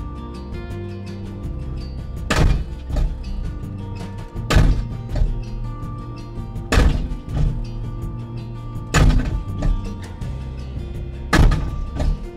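Danuser SM40 hydraulic post hammer striking the top of a steel fence post, five heavy blows a little over two seconds apart, over the steady running of the track loader's engine.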